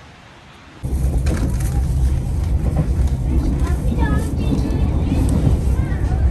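Inside a moving train carriage: a loud low running rumble that starts abruptly about a second in, with voices over it.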